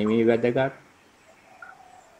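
A man's voice speaking in a meditation talk, stopping less than a second in. After it come only faint, thin, steady tones.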